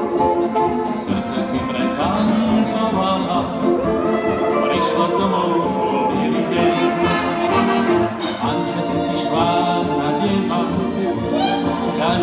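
Hot jazz dance orchestra playing a Slovak song in 1930s style: saxophones, violins and brass over piano and tuba, with a few quick rising runs.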